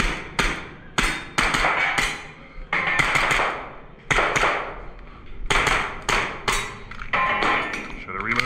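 Pistol fired in quick pairs and strings of three, some fifteen shots with short pauses between, each crack ringing briefly in the small room.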